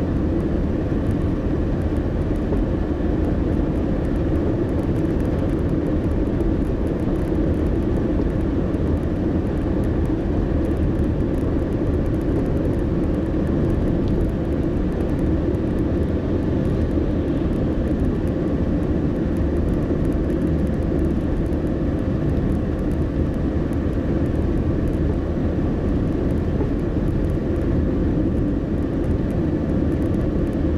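Steady engine and road noise of a car driving at a constant pace, heard from inside the cabin. It holds an even low hum with no sudden events.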